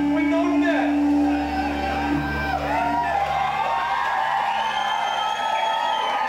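Live rock band playing, with a man's voice shouting and singing into the microphone over the instruments. A sustained low note rings under it and stops about three seconds in.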